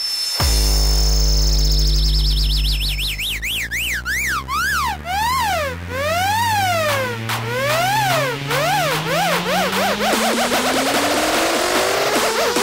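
Hardstyle electronic track build-up. A steady high ringing tone, the ear-ringing the spoken sample leads into, fades out in the first few seconds. A siren-like synth then warbles up and down in pitch, faster and faster, over a deep bass tone that glides slowly upward.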